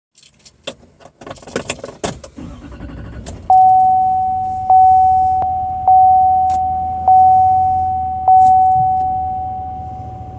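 Keys jangling and rattling for the first few seconds, then a car's electronic warning chime sounding five times, about a second apart, each ding fading out before the next, over a low engine hum.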